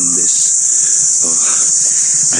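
Loud, steady, high-pitched insect drone that runs without a break or any pulsing.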